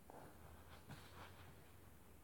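Near silence: room tone with a low hum and a few faint, brief scratches or rustles around the middle.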